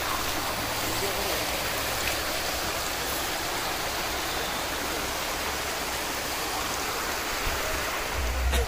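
Shallow hill stream running over rocks and grass, a steady rush of water.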